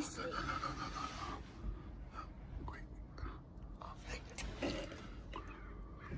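Hushed whispering, with scattered soft clicks and rustles over a low background rumble.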